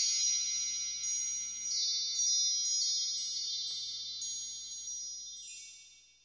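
A shimmering run of high chime tones, with fresh strikes every half second or so over a ringing wash, dying away near the end.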